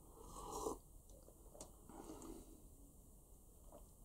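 Faint sound of a person sipping tea from a mug: one short sip about half a second in, cut off sharply, with a small click a little later.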